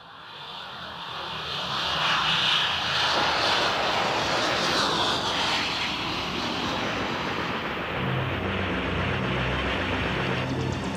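Aircraft engine roar swelling up over the first two seconds and then holding as a loud steady drone. Low synthesizer notes come in under it about eight seconds in, as the music begins.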